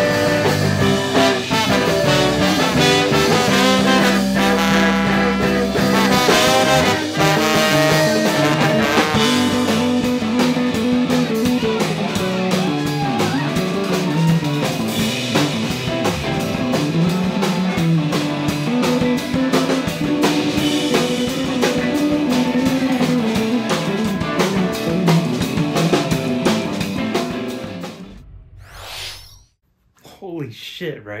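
A live ska band playing: trumpet and trombone with electric guitars, bass guitar and drum kit, moving into a bass guitar solo over the drums. The music fades out about two seconds before the end.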